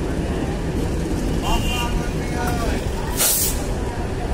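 DEMU train running on the track, a steady loud rumble of wheels and running gear. About three seconds in, a short sharp hiss of air cuts through.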